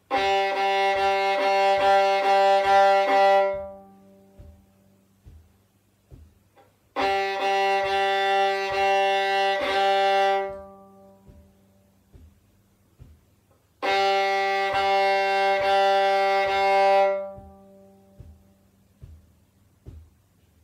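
Fiddle (violin) bowed on its open G string: three phrases of repeated short bow strokes on the one low note, each about three seconds long, with pauses of a few seconds between them. These are simple rhythms for a beginner to copy back.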